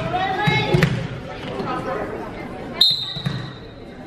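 Referee's whistle: one sharp, steady blast lasting about a second, coming near the end, that signals the server to serve. Voices of players and spectators in the gym come before it.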